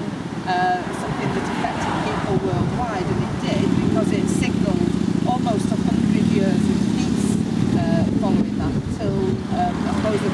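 A road vehicle passing, its low rumble swelling about three and a half seconds in and easing off near the end, under a woman speaking.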